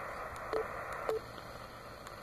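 Yaesu FT-817 HF receiver hissing from its speaker, with only plain band noise and no buzz from the solar panel's buck converter that powers it. Two short single-pitch beeps come about half a second and a second in: the radio's key beeps as the bands are stepped.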